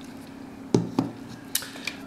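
About four light clicks and knocks of a hard plastic Magic 8-Ball being handled and turned over on a wooden table.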